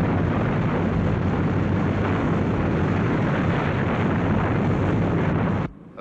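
Rocket engine sound effect at full power on the launch pad: a loud, steady roar, heaviest in the low rumble, that cuts off suddenly near the end.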